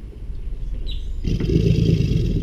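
American alligator bellowing in the breeding season: a deep, rumbling roar that swells, turning loud just over a second in.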